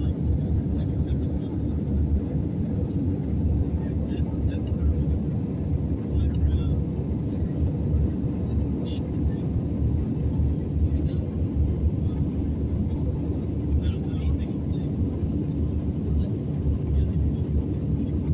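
Steady airliner cabin noise in flight, a low even rumble of engines and airflow heard from inside the cabin at a window seat.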